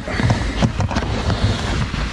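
Handling noise of a plastic boot-side holder in a car's luggage compartment: irregular small clicks and knocks as a hand works the holder open, over a low steady hum.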